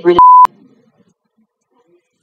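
A single loud censor bleep: one steady 1 kHz tone about a quarter of a second long, starting and stopping abruptly. It cuts off the end of a spoken phrase to hide a word.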